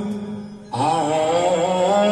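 Male voice singing a long, wavering vocalise over a steady held backing tone. The voice fades out briefly and comes back in about three-quarters of a second in.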